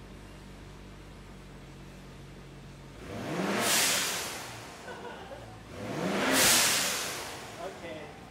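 BMW 640i's turbocharged N55 straight-six idling, then revved twice in park about three seconds apart. Each rev rises in pitch and ends in a loud rushing whoosh from the Turbosmart Kompact dual-port blow-off valve venting boost as the throttle closes. The second rev is the louder.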